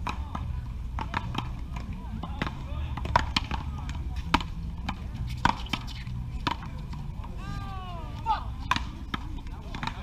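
Paddleball rally: sharp cracks as the ball is struck by paddles and rebounds off the concrete wall, coming irregularly about once a second. A drawn-out call from a player with a rising and falling pitch comes about three-quarters of the way through.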